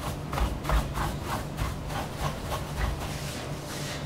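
Dusting brush swept in quick back-and-forth strokes over the knobs and panel of a dusty mixing console, bristles brushing and rubbing about four strokes a second.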